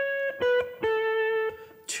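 Clean electric guitar playing a single-note melody: a held C sharp, then a step down to B, then a step down to A, which rings for about half a second before fading. The melody runs A, B, C sharp and back to A over an A chord, with two of its three notes chord tones.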